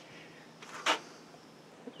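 A single short, sharp click a little under a second in, over a faint background.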